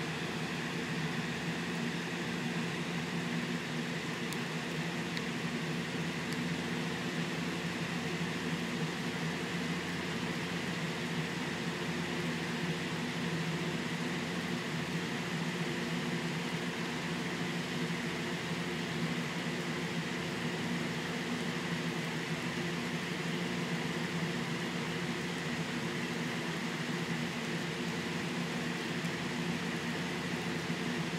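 Steady machine hum with several held tones that does not change.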